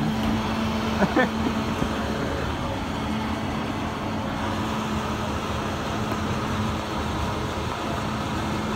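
Commercial countertop blender running steadily, a constant motor whirr with a low hum, while it mixes a mint margarita.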